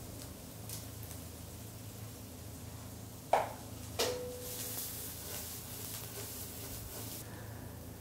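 A frying pan of dried insect larvae in hot oil, sizzling faintly, with two knocks about three and four seconds in, the second ringing briefly as the metal pan is handled on the burner. A faint sizzle follows for a few seconds, over a steady low hum.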